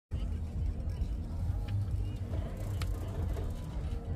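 Wind buffeting the microphone with a low, fluttering rumble, and faint voices in the background.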